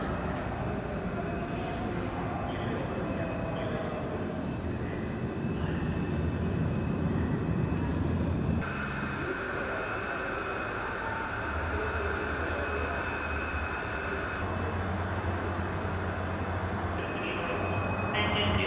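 Steady rumbling background noise of a large exhibition hall, with a faint hum and distant voices. The sound changes abruptly about halfway through, at an edit.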